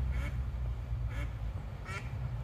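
Ducks on the river quacking: three short quacks, about a second apart at first and then closer together.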